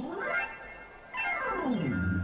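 Synthesized whistle-like sound effect: a tone sweeps up in pitch for about half a second, then, about a second in, sweeps back down to a low held tone.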